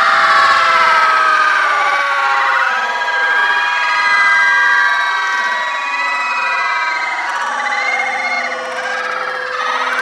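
Crowd of children screaming and shrieking together, many high voices overlapping in one loud, continuous din that eases slightly in the second half.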